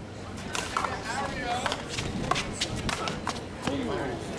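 One-wall handball rally: a small rubber ball smacked by gloved hands, hitting a concrete wall and bouncing on the concrete court, giving about ten sharp, irregular slaps.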